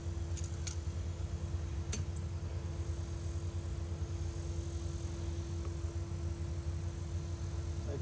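A few light metallic clicks in the first two seconds as a hand tool works the tractor's battery terminal clamp, over a steady low hum.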